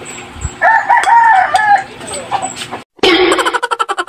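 A crowing call in about four short joined parts, lasting about a second, starting about half a second in. Just before the end it cuts off abruptly into a fast pulsing sound.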